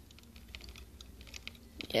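Faint, scattered light clicks of handling noise, a few small ticks each second.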